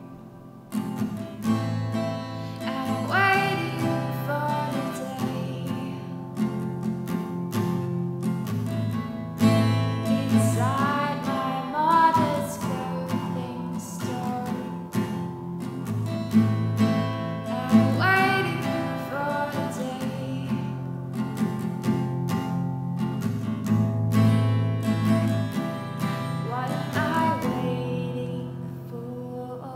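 Acoustic guitar accompaniment, its chords changing every couple of seconds, with a woman's sung phrases that glide up and down every several seconds and carry no clear words.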